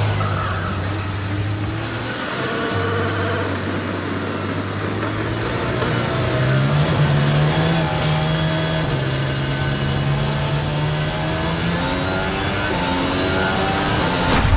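Red Bull Formula One car's engine running at speed around a wet circuit. Its pitch rises and falls repeatedly through gear changes and corners.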